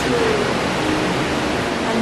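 A woman says one word, then a steady, loud rushing hiss fills the pause.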